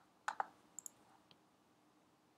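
A quick pair of sharp clicks about a third of a second in, then three fainter clicks over the next second, against faint room tone: the clicks of someone working a computer.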